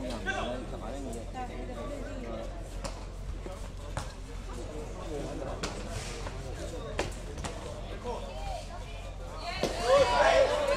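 Indistinct voices of onlookers and coaches, with several sharp slaps from a taekwondo sparring bout spaced a second or more apart. A louder voice calls out near the end.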